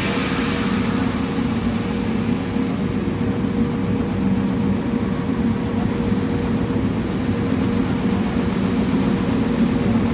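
A large woodworking machine runs steadily with a loud, even hum and a steady tone through it.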